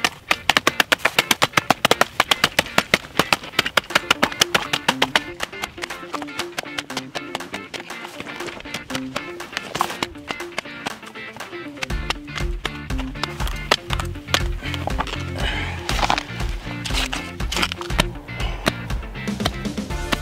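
Background music with a steady beat, with a bass line coming in about halfway through. Under it, a series of sharp chops from a hatchet hacking the spiny leaves off an agave plant, thickest at the start.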